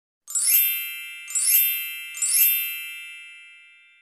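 Bright, bell-like chime sound effect: three shimmering strikes about a second apart, each ringing on and the last fading away.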